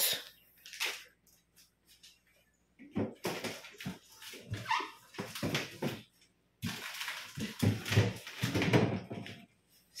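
Plastic bags of pap rustling and crinkling as they are handled and pulled off a fridge shelf, with the densest rustling in the last few seconds. A short whine-like sound comes about halfway through.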